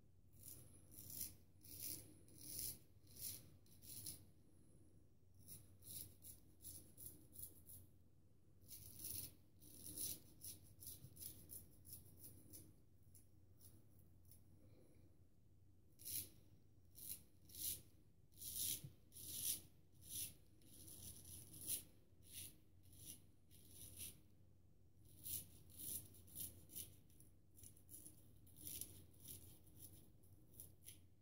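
Vintage Solingen straight razor scraping through lathered stubble on the neck in short strokes across the grain: a faint, crisp rasp with each stroke, in quick runs of several strokes with short pauses between.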